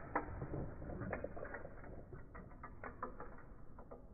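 Plastic toy fighting figures clicking and clacking as their arms are worked to strike, an irregular run of sharp clicks and knocks, busiest in the first second or so and thinning out toward the end.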